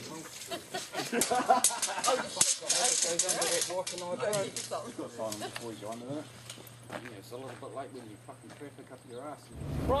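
Several people talking indistinctly, with a few sharp clicks between about one and three seconds in. A low steady rumble starts just before the end.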